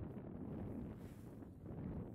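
Wind buffeting the camera's microphone as it moves downhill on skis: a steady, low rumbling noise.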